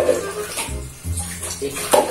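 Water running from a kitchen tap into the sink, under background music with a steady bouncing bass line.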